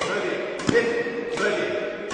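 Badminton racket striking the shuttlecock in a fast drive exchange, sharp hits about every two-thirds of a second, about three in all.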